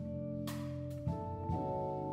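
Live jazz trio of Hammond XK3 organ, guitar and drums playing, with held organ chords under cymbal strikes; the chord changes about a second in.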